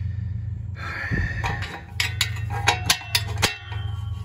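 A steady low hum with a quick series of light metallic clicks and taps about halfway through, some ringing briefly. These are a wrench and the newly threaded oxygen sensor being handled against the exhaust pipe.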